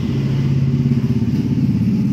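A motor running steadily: a loud, low, even hum with a fine pulsing.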